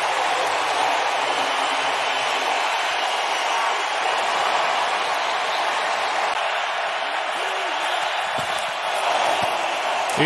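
Stadium crowd noise: a steady din of many voices that holds at an even level throughout.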